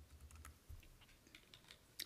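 Near silence with a few faint clicks at a computer as the next presentation slide is brought up, over a soft low rumble in the first half-second.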